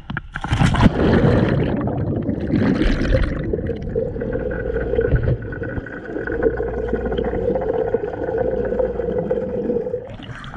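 A camera plunges into a swimming pool with a sharp splash about half a second in, followed by another rush of bubbles around three seconds in. After that comes a steady, muffled underwater rushing and bubbling heard through the submerged camera.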